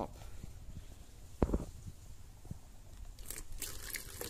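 Handling noise at a plastic bottle planter: one dull knock about one and a half seconds in, a faint tick a second later, then a short hiss near the end as liquid fertilizer starts pouring into the cut-open top bottle.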